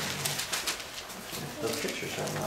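Indistinct, low-pitched human voice sounds with no clear words.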